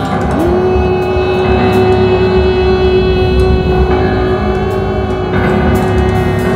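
Live performance by a jazz octet of voices, reeds, violin, double bass, drums and piano. A single long note slides up into pitch just after the start and is held, over a dense layer of other notes, a low bass rumble and light percussion clicks.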